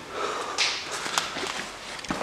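A short rush of breath or a sniff close to the microphone, about half a second in, with a few light clicks.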